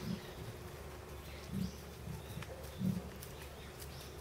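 Dull low thuds of red kangaroos' feet landing as they hop on packed earth, four of them, the loudest near the end, over faint bird chirps and a steady faint hum.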